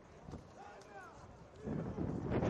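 Large crowd of celebrating basketball fans in a brief lull, with a few scattered faint shouts, then the crowd noise swelling again near the end.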